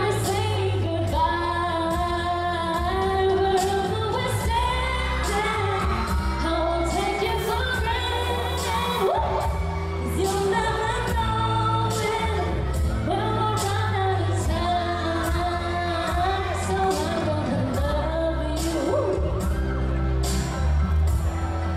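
A woman singing a pop song live into a handheld microphone over accompaniment with a steady beat, amplified through PA speakers.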